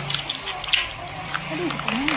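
Wet chewing and small mouth clicks of a person eating a handful of rice by hand, with a short hum near the end.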